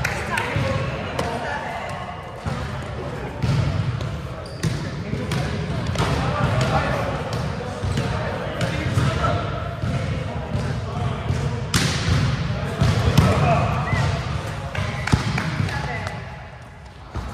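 Volleyball being played in a large gym: repeated sharp hits of hands on the ball, starting with a serve, through a rally.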